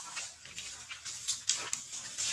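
Macaque vocalizing: a run of short, high squeaky calls, clearest in the second half.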